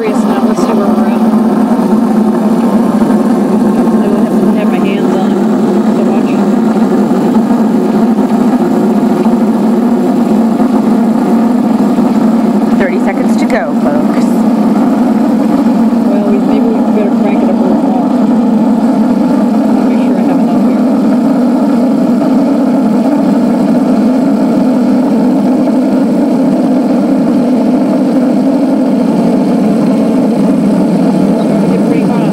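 Krups Espresseria superautomatic espresso machine steaming milk through its automatic frothing wand: the pump runs with a loud, steady drone, which she likens to a drum beat, under the steam frothing the milk in a stainless pitcher.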